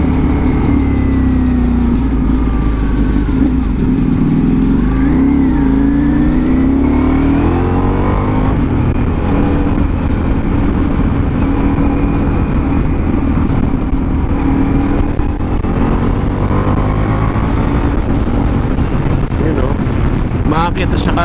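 Ducati Multistrada V4 Pikes Peak's V4 engine under way, with wind noise on the microphone. The engine note falls as the bike slows, rises as it accelerates about six to nine seconds in, then holds steady while cruising.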